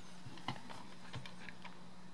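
Six or seven light plastic clicks and taps, the loudest about half a second in: fingers handling a toy's handheld remote control and pressing its buttons. A faint steady low hum runs underneath.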